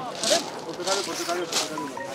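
Men's voices calling and shouting to each other, words not clearly made out.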